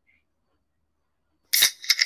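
A livestream app's sound effect plays: three quick, bright clinking hits with a short ringing tail, starting about three-quarters of the way in.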